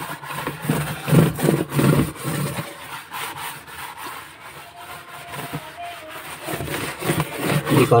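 Dishwashing scouring pad scrubbing the wet inside wall of a plastic bucket, repeated back-and-forth strokes rubbing sticky residue off the plastic.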